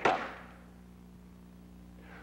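A slide projector advancing to the next slide: one sharp clunk at the start that rings away within half a second, followed by a low, steady hum.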